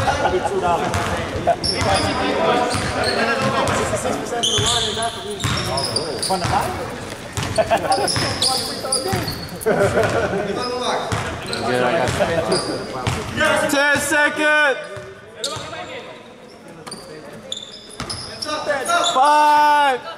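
Basketball bouncing on a hardwood gym floor in a series of short knocks, with players' voices and calls echoing in the hall.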